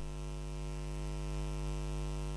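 Steady electrical mains hum: a low, even buzz with a stack of overtones.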